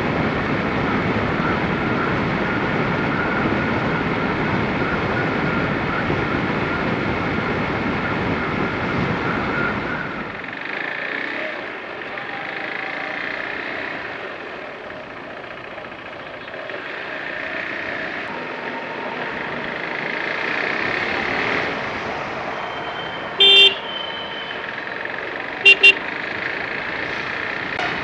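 Motorcycle riding along a road, steady engine and road noise with a faint whine. About ten seconds in, it drops to quieter, slower riding in town traffic. A vehicle horn sounds once, then twice briefly near the end.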